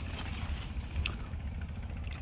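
Low, steady rumble of wind on the microphone, with a faint click about a second in.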